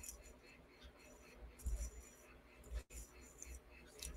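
Quiet room tone with a low hum, broken by a few faint soft taps and clinks.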